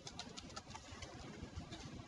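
A few faint computer keyboard keystrokes near the start, over a low hum of room noise.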